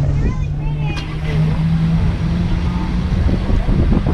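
Cars in slow traffic running close by, a steady low engine hum over a low rumble, the hum dropping away near the end.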